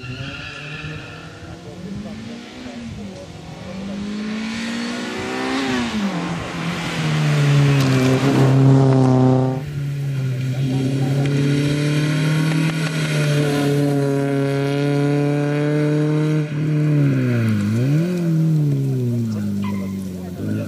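Renault Clio rally car's engine revving hard and climbing through the gears, with a sudden lift off the throttle about halfway through. It then holds steady and dips sharply in revs before picking up again near the end as the car brakes for and runs through a tight tyre chicane.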